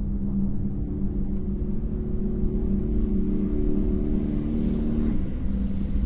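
Old Lada sedan's engine running with a steady low drone that shifts in tone about five seconds in.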